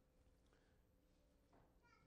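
Near silence: faint room tone with a low steady hum, and a brief, very faint high-pitched sound near the end.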